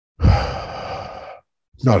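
A man's loud, breathy sigh close to the microphone, lasting about a second, before he starts speaking again near the end.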